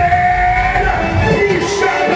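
Background rock song with a singing voice, one long sung note held through about the first second.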